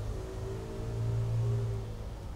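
A man's voice holding one low, steady closed-mouth hum, a drawn-out "mmm" at about the pitch of his speaking voice.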